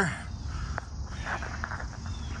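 Footsteps and phone-handling noise over a low rumble as the person filming stands up and walks. There is one sharp click a little under a second in and a few soft scuffs after it.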